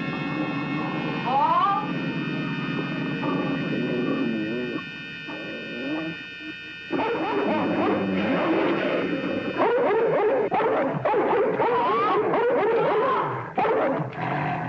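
Horror-film soundtrack: sustained electronic music tones for about the first seven seconds, then a dog's frantic yelping and whining, dense and chaotic, over the rest.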